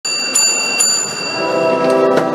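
A small sacristy bell is rung a few times, giving a high, bright ringing that fades. It is the signal that the church service is beginning. About one and a half seconds in, the church organ starts playing a sustained chord.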